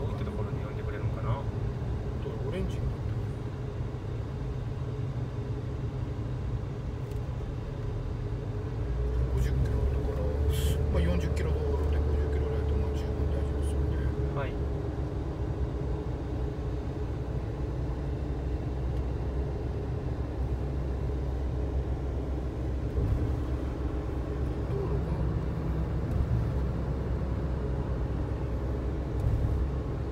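Steady low road and tyre rumble inside a moving car's cabin, growing louder about nine seconds in, with a faint steady hum over it and a few light clicks.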